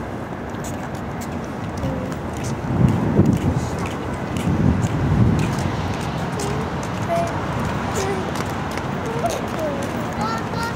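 Outdoor city ambience: a steady wash of road traffic noise, with short snatches of distant voices. Two low rumbles swell up about three and five seconds in.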